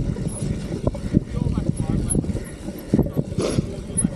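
Deviate Claymore mountain bike descending a rough, rutted muddy trail: tyres rumbling over the dirt with a rapid, irregular clatter of knocks from the bike over the bumps.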